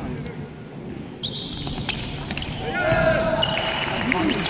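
Basketball bouncing on a hardwood gym floor during play. From about a second in, sneakers squeak on the court as players run, and players shout.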